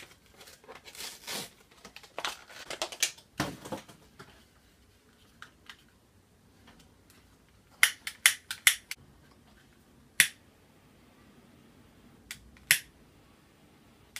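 Handling and rustling for the first few seconds, then the trigger of a long-nose utility lighter clicking sharply several times in quick succession about eight seconds in, once more around ten seconds, and twice near the end, as it is worked to light a small jar candle.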